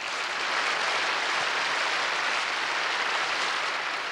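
Audience applauding steadily, easing off near the end.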